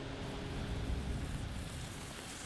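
Steady rushing and rubbing noise of a body sliding down a rubber-matted landing ramp, with wind on a body-mounted camera's microphone; a low rumble swells slightly about halfway through.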